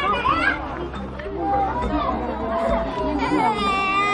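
Many people talking at once, adults and children, in a busy crowd. Near the end a small child starts crying in one long, steady wail.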